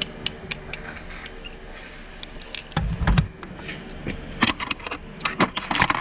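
Plastic clicks and knocks from a Playmobil toy helicopter and figure being handled, heard from inside the toy's cabin, with a dull thump about three seconds in and a quick run of clicks near the end.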